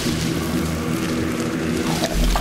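Film soundtrack drone: several low tones held steady over a dense, rumbling noise.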